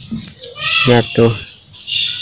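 Domestic cat giving a short, rising yowl while stalking a snake: the different call it makes on seeing prey or a snake.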